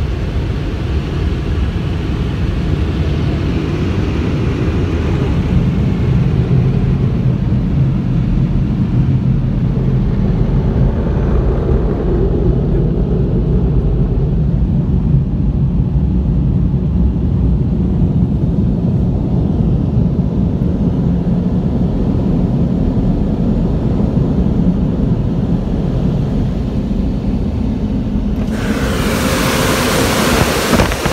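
Mark VII AquaDri car-wash dryer blowers running, a loud steady rush of air with a low rumble, heard from inside the car as the water is blown off the glass. About twelve seconds in the higher hiss thins out, leaving mostly the low rumble, and near the end a sudden louder hiss cuts in.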